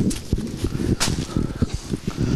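Footsteps walking through a thick layer of dry fallen leaves: irregular dull thumps and rustles, with one sharper click about a second in.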